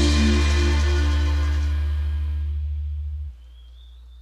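A live reggae band's final chord rings out after the last drum hits, with a strong held bass note under guitars and keys, slowly fading. About three seconds in the bass cuts off suddenly, leaving only a faint low steady hum.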